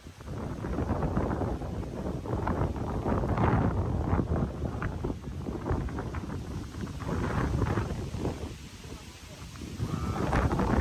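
Gusting wind buffeting the phone microphone, rising and falling in uneven surges, with indistinct voices of people talking in the background.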